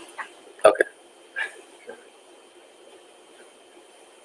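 A person's brief vocal bursts, like a short chuckle or hiccup-like laugh, about half a second in, with a couple of fainter ones after, then only faint room hiss.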